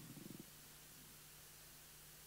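Near silence: room tone with a faint steady low hum, and a brief faint low murmur in the first half second.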